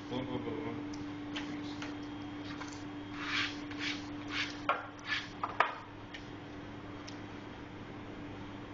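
Food prep at a plastic cutting board: a few brushing, wiping swishes a few seconds in, then three sharp knocks in quick succession, over a steady hum of kitchen equipment.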